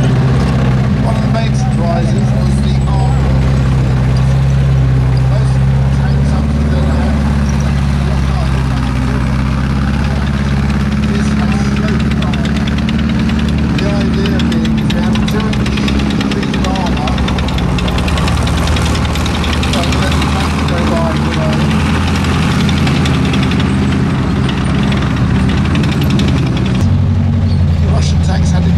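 T-34/85 tank's V12 diesel engine running as the tank drives, a steady low drone with a clattering edge, which shifts in pitch shortly before the end.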